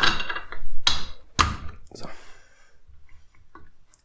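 Two sharp metal knocks about half a second apart, about a second in, as a part is seated into a motorcycle front fork leg clamped in a vise. These are followed by a few faint handling clicks.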